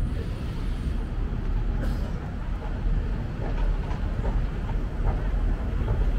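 Steady low rumble of city background noise.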